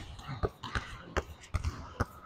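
Basketball dribbled hard and fast on an indoor court floor, bouncing about every half second.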